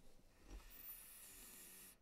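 Near silence, with a faint hiss of a man's breath drawn through the nose from about half a second in until just before the end.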